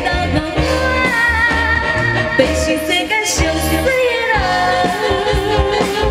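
Live getai band music with a woman singing a Hokkien pop song into a microphone over a steady bass beat, her voice holding long, wavering notes and sliding down on one about four seconds in.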